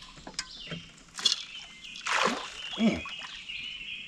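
Birds chirping in the background. A short splash of water comes about a second in, then a man gives two short exclamations falling in pitch, a little after two and three seconds in, as a fish is hooked.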